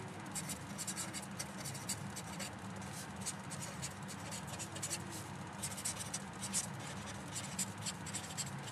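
Pen writing on paper: a run of short, quick scratchy strokes as a line of handwriting is written, over a faint steady low hum.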